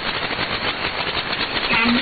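Shortwave receiver audio in upper sideband on 12140 kHz: static hiss chopped by rapid, even pulsing interference, about ten pulses a second. A faint scrap of the S06s numbers station's Russian woman's voice comes through near the end.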